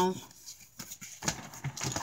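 A few light taps and rustles from a handmade paper journal being handled and set down, starting about three quarters of a second in.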